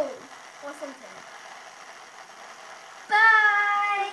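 A child's voice: a short falling exclamation at the start, then, about three seconds in, a loud, long, high-pitched held cry without words, like a cheer.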